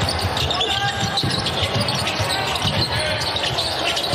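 A basketball being dribbled on a hardwood court, bouncing repeatedly, with sneakers squeaking and players' voices in the arena.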